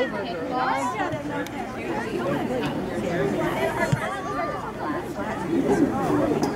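Many voices talking and calling out over one another, the chatter of onlookers and players at an outdoor soccer game, with one sharp knock about four seconds in.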